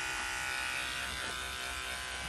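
Electric dog grooming clippers running with a steady, even buzzing hum.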